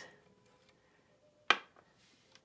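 A single sharp click about one and a half seconds in as the plastic left platen knob of a Hermes 3000 typewriter is pulled off its shaft and set down on the desk.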